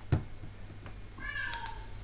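A sharp knock just after the start, then about a second in a short high-pitched call that falls in pitch at its end.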